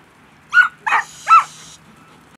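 Rottweiler barking three times in quick succession, loud.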